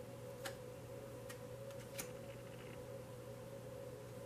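Tarot cards being drawn and laid on the cloth-covered table: three faint, short clicks in the first two seconds. A steady low hum runs underneath.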